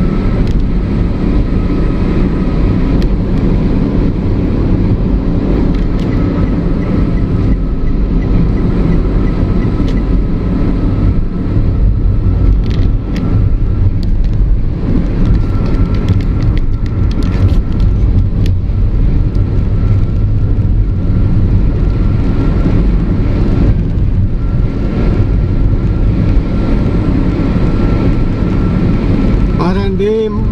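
Steady engine and road noise heard from inside a vehicle cruising at highway speed, with a faint steady high whine over it.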